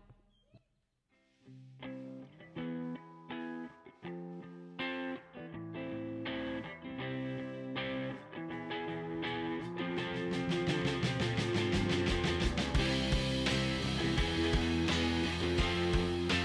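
Live band opening a song instrumentally: after a second of quiet, an electric guitar plays picked notes, and from about ten seconds in the drums and the rest of the band join and the sound grows louder.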